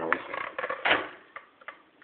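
Handling noise as a small aluminium-cased grid-tie inverter is turned over in the hand: a few light clicks and knocks, the loudest a little under a second in.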